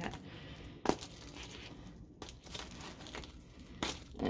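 Plastic wrap being crinkled and torn off a small cardboard box, fairly faint, with two sharp clicks: one about a second in and one near the end.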